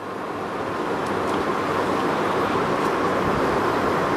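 A steady rushing noise that swells up over the first second and then holds.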